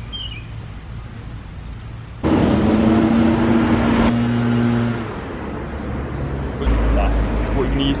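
Road traffic on a busy street: a vehicle passing close by with a steady engine drone and tyre noise, loudest from about two seconds in and fading after about five seconds, then a deep low rumble near the end.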